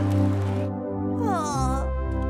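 Cartoon background music with steady sustained notes. In the second half a buzzy pitched call slides down in pitch and then rises again.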